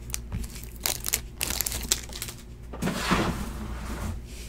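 Clear plastic bag crinkling as a trading card is pulled out of it: a string of short crackles, with a longer rustle about three seconds in.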